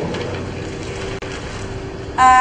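Steady low hum of room noise with paper ballots being unfolded and handled.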